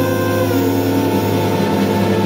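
A jazz big band of saxophones, trumpets and trombones holds one long, steady chord over a low bass note.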